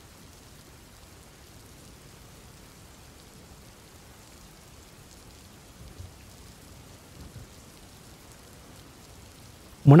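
Faint steady rain, an ambient rain-sound bed with no other sound over it.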